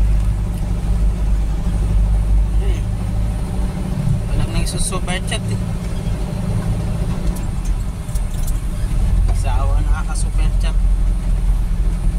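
Engine and road noise heard from inside a moving vehicle's cab: a steady low drone, with short stretches of voices talking about four seconds in and again near ten seconds.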